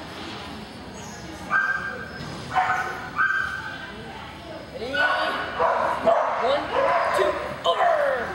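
Dogs barking and yipping: several short, high yips starting about one and a half seconds in, then a quicker run of barks in the second half.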